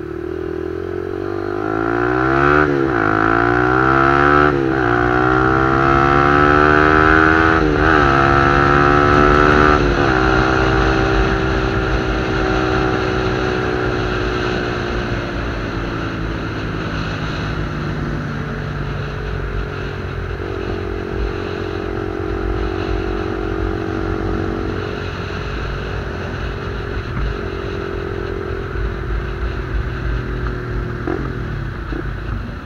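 Honda Winner 150 single-cylinder motorcycle with a modified, opened-up exhaust accelerating hard through the gears: the engine note climbs and drops sharply at four upshifts in the first ten seconds. It then cruises steadily, easing off to a lower, even note about two-thirds of the way through.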